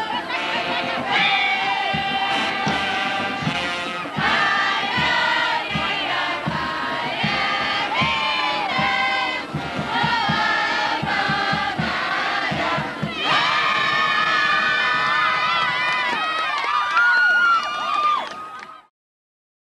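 A group of teenage girls cheering and shouting together, many high voices overlapping, against crowd noise; loudest just before the end.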